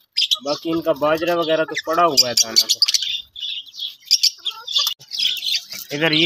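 Flock of budgerigars chattering and chirping in a wire-mesh cage, many short high chirps overlapping.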